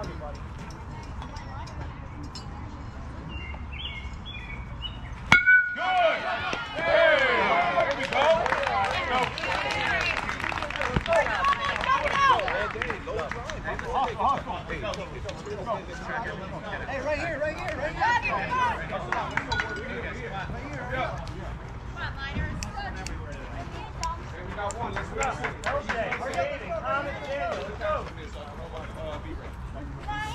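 A baseball bat hits a pitched ball with one sharp crack about five seconds in. Spectators and players shout and cheer right after it, loudest in the few seconds after the hit.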